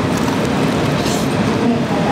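A steady, even noise holds at the same level throughout, with faint voices underneath.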